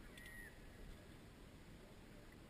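Near silence: faint steady outdoor noise, with a brief faint high whistle-like tone just after the start.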